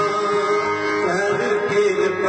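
Sikh kirtan: two Nagi harmoniums and a pair of tabla playing steadily, with a voice singing the hymn.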